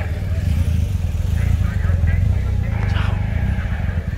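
Low, steady rumble of a Kia SUV driving slowly past close by, with voices in the background.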